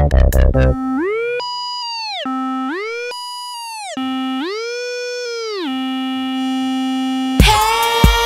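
A lone synthesizer tone in a break of an electronic pop track: it slides smoothly up about an octave, holds, and slides back down, three times over, resting on a steady low note between the swoops. The beat cuts out just after the start and the full music comes back in near the end.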